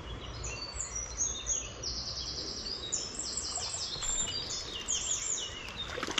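Wild songbirds singing: quick series of repeated high chirps and trills, one phrase after another, over a low background rumble. A few sharp clicks come right at the end.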